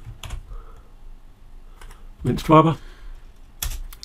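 Computer keyboard typing: a few scattered keystrokes, then a louder key press near the end as a search is entered.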